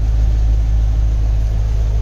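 A 2002 Chevrolet Corvette C5's 5.7-litre LS1 V8 idling, a steady low drone that does not change in pitch or level.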